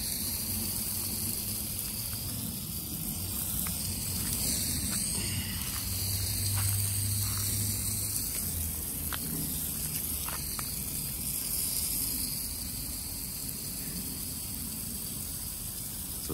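Water spray falling on dry ground cover and leaf litter, a steady hiss at an even level.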